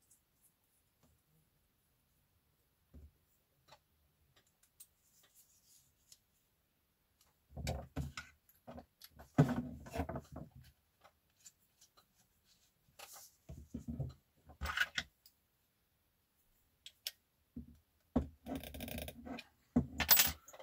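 Small handling sounds of a small circular saw disc being fitted onto a Dremel rotary tool's mandrel. Scattered faint clicks are followed by three short spells of rubbing and scraping, the loudest a little under halfway through.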